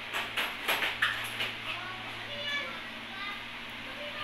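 Children's high-pitched voices in the background. A quick run of sharp clicks and rustles comes in the first second and a half, the loudest about a second in.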